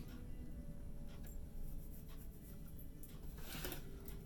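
Tarot cards being handled and slid over a table, with a brief papery rustle near the end, over faint steady background music.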